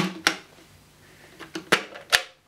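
Sharp plastic clicks from the clear dust bin of a Dyson Cinetic Big Ball vacuum cleaner as its release button is pressed and the bin mechanism opens. There are two clicks at the start, a quiet stretch, then another click near the end.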